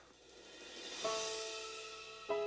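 Gospel ballad intro: a soft cymbal swell rises over the first second, then an electric keyboard with a piano sound strikes a chord about a second in that rings and slowly fades.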